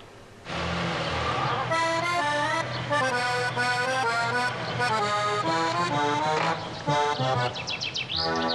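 Accordion music: a low chordal swell about half a second in, then a lively melody of quick, distinct notes over a steady bass.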